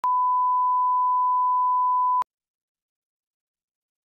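Broadcast 1 kHz line-up test tone, the steady pure reference tone that runs with colour bars, cutting off suddenly a little over two seconds in.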